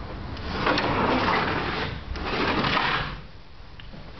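A sliding glass door rolling open along its track in two pushes, each about a second long.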